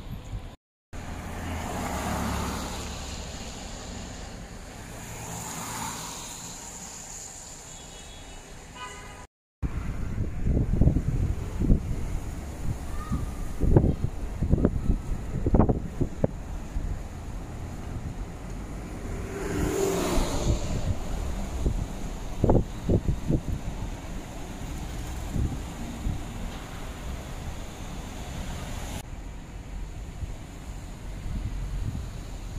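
Road traffic heard from a moving car, with steady engine and road noise and vehicles passing, broken by two brief cuts to silence. After the second cut, about nine seconds in, strong low wind buffeting hits the microphone, and a vehicle swells past near twenty seconds.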